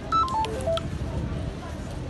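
A quick run of short electronic beeps at changing pitches, like a little tune, in the first second, with voices in the background.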